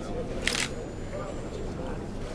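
A press camera shutter clicks once, about half a second in, over a low murmur of voices.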